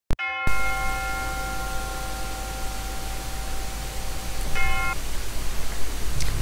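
A bell-like chime rings once about half a second in and fades slowly over a few seconds. A short second ring sounds near the end. Both come over a steady hiss and low hum.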